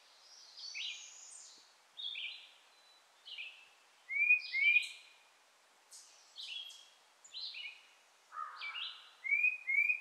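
Woodland songbirds singing in short phrases, one after another about every second, loudest about four seconds in and near the end.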